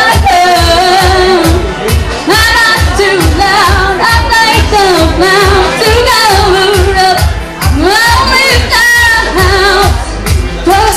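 A woman singing a song live with a rock band behind her, a steady drum beat under the melody.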